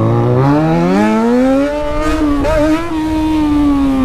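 Yamaha XJ6 inline-four motorcycle engine through its loud aftermarket exhaust, revving up hard under acceleration. The note climbs steadily for about two seconds, breaks briefly about two and a half seconds in, then holds and slowly sinks as the throttle eases.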